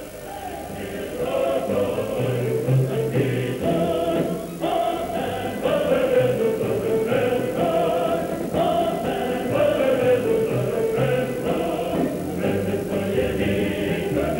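A choir singing a song with music, voices over a steady low bass line.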